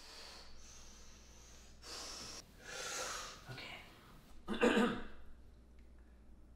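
A man breathing heavily in a series of loud, separate breaths. The loudest and throatiest one comes about four and a half seconds in.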